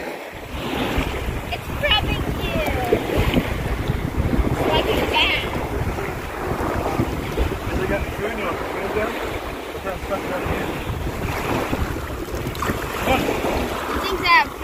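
Wind buffeting the microphone over small waves lapping in shallow water at the beach's edge. Faint voices come through now and then.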